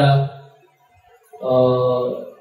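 Only speech: a man's voice trails off at the end of a phrase, a short pause follows, then a drawn-out hesitation sound "eh" held steady at one pitch.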